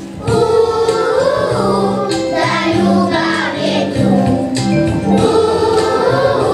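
A group of children singing a song together over an instrumental accompaniment of held low notes. There is a short dip right at the start before the singing comes back in.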